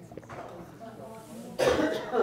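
A person coughs once, loud and sudden, near the end, over a low murmur of room sound.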